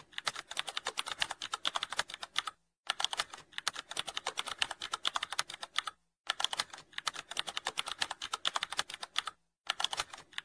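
Computer keyboard typing: a rapid, even run of keystrokes that pauses briefly three times.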